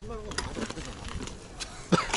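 Mountain bike rolling over a rocky dirt trail: scattered light clicks and knocks of tyres and frame on rock, with a sharper knock near the end.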